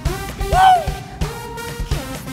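Live pop concert music: a band playing with regular drum hits, and a singer's voice swooping up and down about half a second in.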